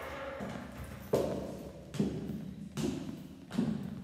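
Footsteps climbing stairs: four thudding steps, a little under a second apart.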